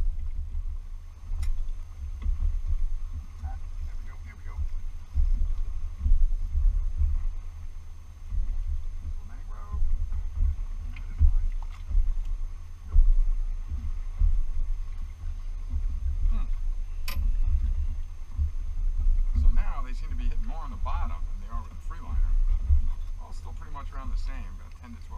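Wind buffeting the camera's microphone: a low, uneven rumble that swells and drops with the gusts. A few faint clicks and brief rustling sounds come near the end.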